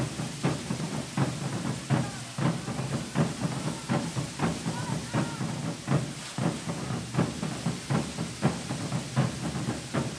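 A steady drumbeat, about two beats a second, over the continuous hiss of carretilles: hand-held firework fountains spraying sparks. Crowd voices are mixed in.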